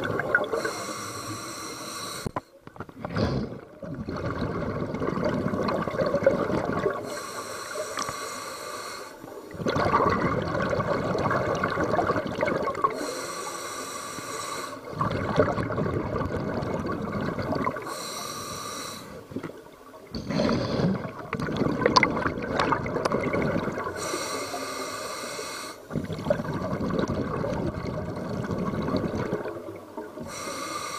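A scuba diver breathing through a regulator underwater: about five slow breaths, each a hissing inhale through the demand valve followed by a longer, louder burst of exhaled bubbles gurgling out.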